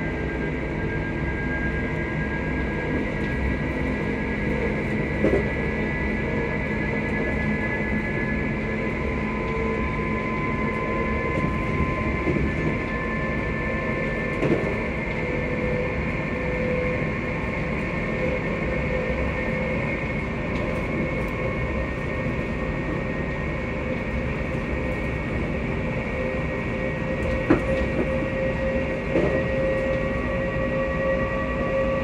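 Passenger train running, heard from inside the carriage: a steady rumble of wheels and running gear, with several held tones that drift slowly in pitch. A few sharp knocks or rattles come through now and then.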